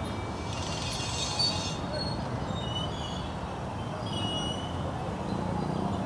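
Busy city-junction traffic: a steady rumble of motorcycle and car engines with people's voices in the background, and a brief high-pitched squeal about a second in.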